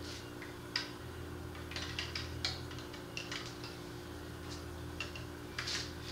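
Handling noise: a run of light clicks and knocks as plastic tubing is fed down through a wooden stool and a plastic jug is set into it, the sharpest knock near the end, over a steady low hum.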